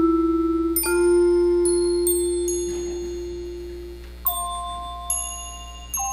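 Mallet percussion playing a slow, simple melody: single struck bar notes that ring out, bright bell-like tones entering about once a second over a long low note that fades away about four seconds in.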